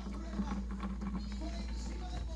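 Quiet room tone: a steady low hum with a few faint light ticks.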